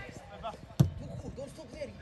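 A football kicked once, a single sharp thud a little under a second in, with players' voices calling faintly in the background.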